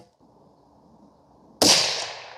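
A single shot from a scoped bolt-action precision rifle about one and a half seconds in: a sharp crack followed by a tail that rings out and fades over about a second.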